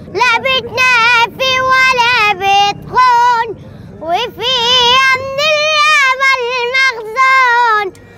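A boy singing solo in a high, clear voice with a wide vibrato, in long held phrases with a short pause about halfway through.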